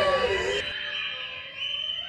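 A children's choir and its backing music finishing a song: the last sung note slides down, and the held accompaniment fades away.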